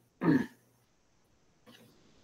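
A single brief vocal sound from a person on the call, falling in pitch and lasting about a third of a second, followed by near silence.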